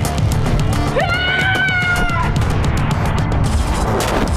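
Fight-scene soundtrack: a loud, driving music score with rapid beats. About a second in, a high-pitched cry rises and is held for just over a second over the music.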